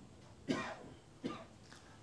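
A person coughing twice, close to a microphone. The first cough, about half a second in, is the louder; a shorter one follows just after a second.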